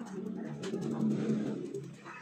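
A dove cooing: one long, low coo that swells about a second in.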